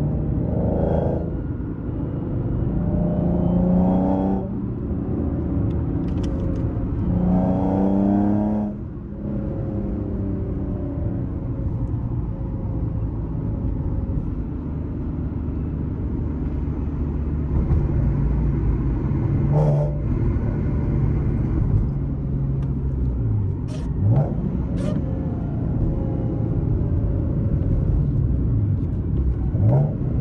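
Modded Nissan 370Z's 3.7-litre V6 with a loud aftermarket exhaust, heard from inside the cabin, accelerating through the manual gears: revs rise and break off at shifts about four and nine seconds in, then the engine runs steadily in traffic, with two short, quick rises in revs in the second half.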